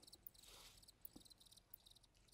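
Near silence with faint crickets chirping, a steady high pulsing trill.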